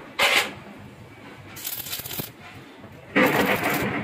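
A metal handle clinks sharply against an iron kadai, then comes the crackle of arc welding in two short bursts as the handle is tack-welded to the pan's rim, the second burst louder, near the end.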